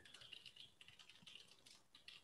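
Faint typing on a computer keyboard: a quick run of many light keystrokes.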